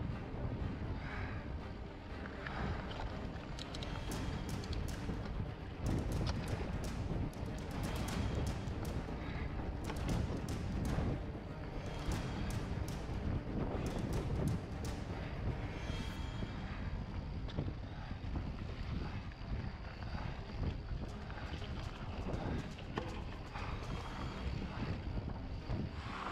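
Mountain bike riding a dirt singletrack, heard through a helmet camera: wind buffets the mic over the tyres' rumble on the trail. Dense rattles and clicks from the bike on rough ground crowd the middle stretch.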